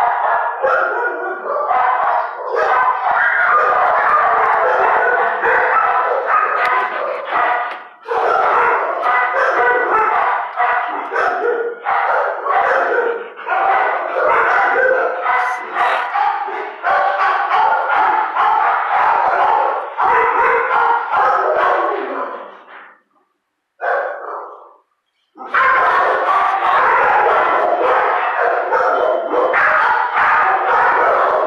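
Shelter kennel dogs barking in a constant, overlapping chorus. It drops out briefly about two-thirds of the way through, with one short bark in the gap, then starts again.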